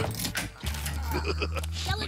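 Cartoon soundtrack: background music with short clicking sound effects, then a steady low hum lasting about a second.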